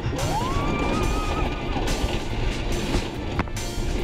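Wooden roller coaster train running along its track, with loud rumbling and clattering mixed with rushing wind. A rider lets out a rising 'whoo' that is held for about a second and a half near the start. A single sharp click comes near the end.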